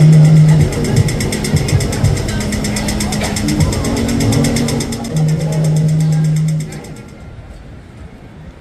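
Pedestrian crossing signal giving its rapid ticking walk signal, several ticks a second. A loud low steady drone sounds over it at the start and again about five seconds in, and the ticking stops near the end.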